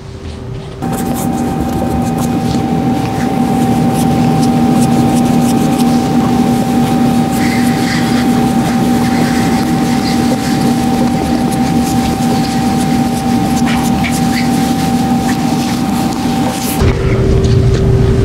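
A steady machine hum, two constant tones over a dense rushing noise, that shifts to a different, lower and rougher hum near the end.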